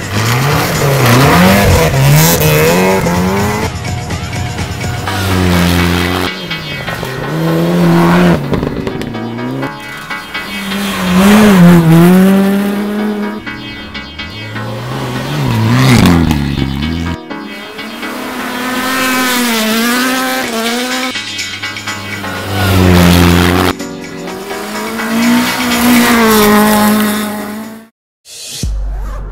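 Several rally cars passing one after another on a snow stage, each engine revving high, dropping and revving again through the corner, swelling loud as it goes by and fading away.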